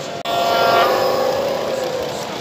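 Motorised LEGO train running past close by on LEGO track. The sound swells as it nears and eases off as it goes by.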